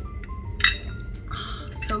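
A single sharp clink against a drinking glass, then a short sip through a straw, over soft background music.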